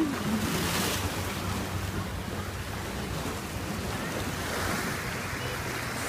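Steady wash of small waves on open bay water with wind, and wind buffeting the microphone.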